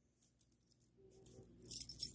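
Near silence, then near the end a few brief metallic clinks as a ring of keys is picked up.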